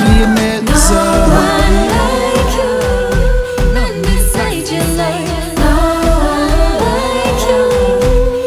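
Live gospel worship music: a band with a steady drum and bass beat under singing voices, holding long sung notes.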